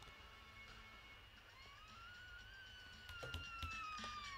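A faint, clear tone glides up from about a second and a half in, then falls slowly. A fainter overtone rides above it.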